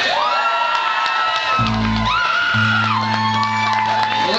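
Audience whooping and cheering as a live rock song ends, with a held low bass note and a steady ringing tone from the stage underneath.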